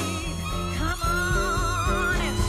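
Live swing-jazz combo playing: an upright double bass plucks a walking line of short low notes while a high note is held with vibrato through the second half.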